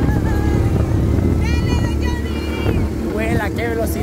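ATV engine running at steady road speed, with a deep rumble of engine and wind on the microphone. Voices call out over it around the middle and again near the end.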